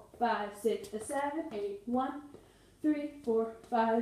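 A woman speaking in short, separate words, with a brief pause a little past two seconds in.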